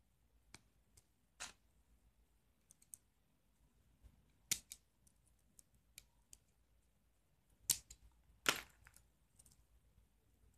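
Scattered small metallic clicks and taps from brass cabinet hinges and a small screw being handled and fastened with a small screwdriver. The sharpest clicks come about four and a half seconds in and twice near the end.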